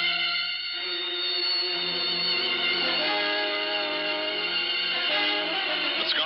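Radio-drama music bridge of held chords, the harmony changing about halfway through and again near the end.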